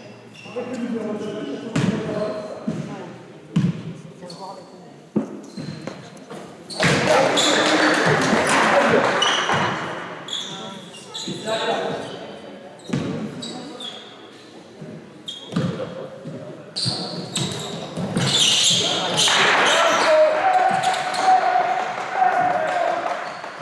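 Basketball game in a reverberant gym: the ball bounces on the court, sneakers squeak, and players and spectators call out. Twice the crowd cheers and shouts, about seven seconds in and again near the end, as free throws are made.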